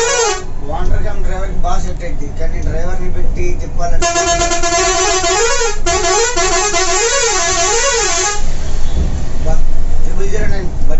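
A vehicle horn sounding for about four seconds, its pitch holding and then warbling up and down about three times before it cuts off, heard inside a bus cabin as it overtakes trucks on a highway. A short honk comes right at the start, and the low rumble of the bus and road runs underneath.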